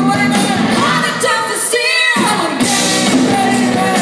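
Live rock band playing with singing: electric guitar, bass and drums under lead and backing vocals. About a second and a half in, the band briefly drops out, leaving a wavering held sung note, and the full band comes back in after about a second.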